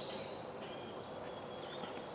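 Insects trilling steadily outdoors, a thin, even high-pitched tone over a faint background haze.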